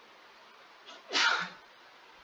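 A person's short, sharp burst of breath noise about a second in, lasting under half a second and ending in a brief voiced sound.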